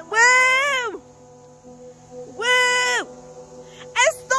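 A child's two short high-pitched yells, each rising then falling in pitch, one at the start and one a little past halfway, over faint background music.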